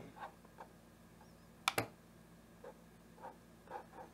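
A few faint, scattered clicks from a computer mouse being used, with one sharper click a little under two seconds in.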